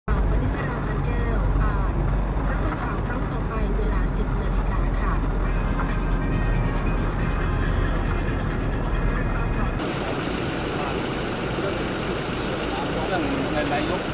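Steady low road and engine rumble heard from inside a moving car, with some talking over it. About ten seconds in, the sound cuts abruptly to outdoor ambience with people talking.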